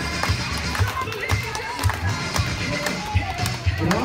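Music with a steady, repeating bass beat, with voices over it.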